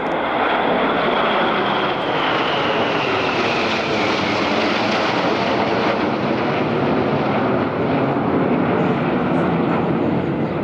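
Red Arrows formation of BAE Hawk T1 jets passing overhead: a loud, steady jet-engine roar. A high whine within it falls in pitch over the first few seconds as the jets go by.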